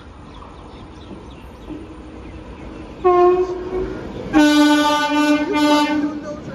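Indian Railways electric locomotive approaching through a station, sounding its air horn. A low train rumble comes first, then a short horn blast about three seconds in, then a longer, louder blast from about four and a half seconds on, broken once briefly.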